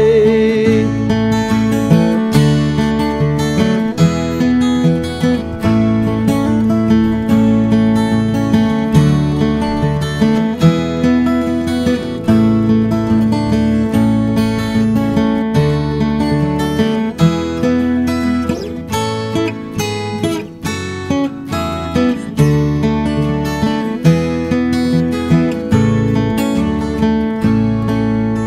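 Instrumental break of a folk song: acoustic guitar strumming over an electric bass guitar line.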